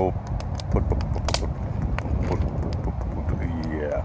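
A man's low rumbling vocal imitation of a rough, misfiring engine idle, the sound of a Ford Windstar with oil-fouled spark plugs. A voice comes back near the end.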